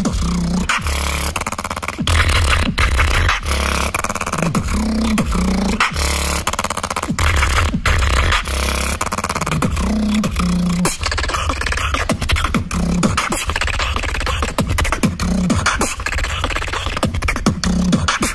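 Solo human beatbox routine: a continuous deep bass line under short hummed notes that recur every couple of seconds, cut through by rapid sharp snare and hi-hat clicks.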